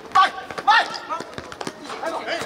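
Two short, loud shouts from players, with the thuds of a football being kicked and bouncing on a hard court.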